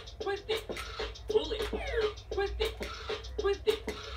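Bop It toy mid-game: its quick, steady electronic beat loops while its voice calls out the moves, with the short sound effects of the moves being done in time with the beat.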